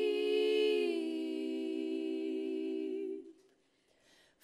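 Three women's voices singing a cappella, holding one long wordless chord in close harmony that fades out about three seconds in, leaving near silence.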